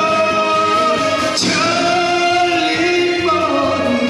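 A man singing a Korean trot song live into a handheld microphone over instrumental accompaniment, holding two long notes with a short break between them about a second and a half in.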